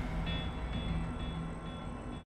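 Logo-ident sound effect: a deep, steady rumble with a few held tones above it, starting abruptly and running on with no speech.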